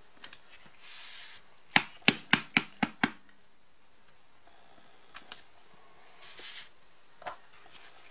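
Wood-mounted rubber stamp knocked down six times in quick succession, about four a second, in sharp wooden taps against the paper and desk. A short soft rubbing comes just before, and a few faint clicks follow later.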